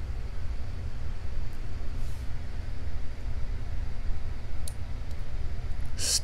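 A steady low background hum with a few faint, light clicks of metal tweezers handling small brass lock pins and a brass lock cylinder.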